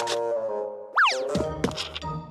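Cartoon sound effects over light background music: a springy sound sweeps sharply up in pitch and falls back about a second in, the loudest thing, with a few shorter sweeps after it.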